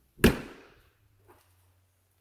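A single loud bang of a horse trailer door shutting, dying away within about half a second.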